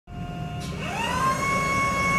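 Mitsubishi FB16NT battery-electric forklift's hydraulic pump motor spinning up, its whine rising in pitch just under a second in and then holding steady, as the forks are tilted and lifted, over a low hum.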